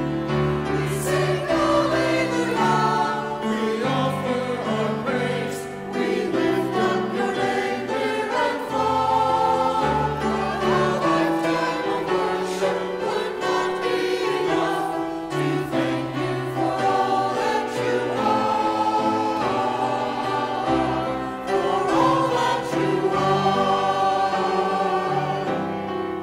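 Mixed church choir singing an anthem of praise in English over sustained instrumental accompaniment, with sung lines such as "We sing alleluia; we offer our praise!" and "O Spirit of God, bringing comfort and peace."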